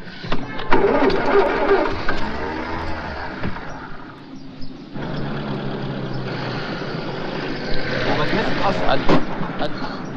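A classic Mini's small four-cylinder engine starting up, then the car running, with voices over it near the end.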